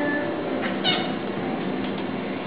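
A short meow-like falling cry about a second in, during a thin, sparse stretch of a pop song.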